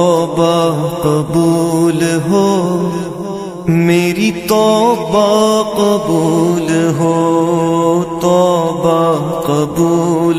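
A man singing a naat: a long melodic vocal line bending over a steady low drone, with no clear words heard.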